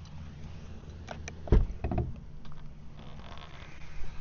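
The rear hatch of a Corvette E-Ray being released and popped open: a few light clicks from the latch, then two thuds about half a second apart, with a low steady hum underneath.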